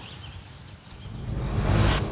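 A low background hiss, then a rising whoosh that swells louder over the last second: a transition sound effect accompanying a scene change.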